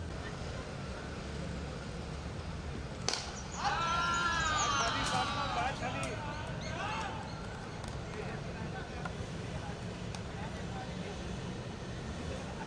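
A single sharp crack of bat on ball about three seconds in, then a couple of seconds of excited shouting and cheering from several people: a six that wins the match with balls to spare.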